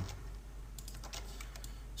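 A few faint clicks from a computer keyboard and mouse, over a steady low hum.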